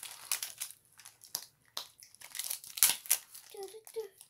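Plastic sweet packaging crinkling and crackling in irregular bursts as it is handled.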